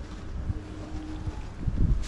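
Wind buffeting the microphone: an irregular low rumble, with a stronger gust near the end.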